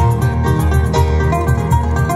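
Live band playing a traditional Nepali Swang: acoustic guitars strumming and picking over a steady low beat.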